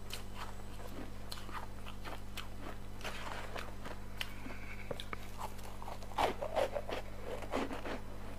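Ice blocks dusted with matcha and milk powder crunching as they are bitten and chewed close to the microphone, a steady run of short crisp crunches and crackles, with a louder cluster of crunches about six seconds in.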